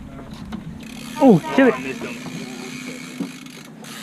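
Steady low hum of a fishing boat's engine with a steady hiss over it, and a man's drawn-out "oh" falling in pitch about a second in.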